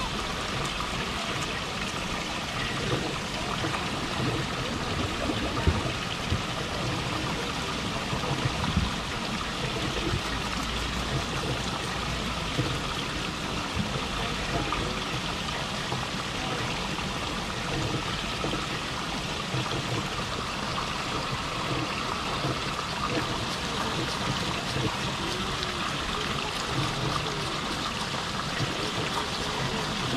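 Small rock waterfall trickling and splashing steadily into a pond, with a beaver chewing a piece of apple close by. A couple of brief louder sounds come about six and nine seconds in.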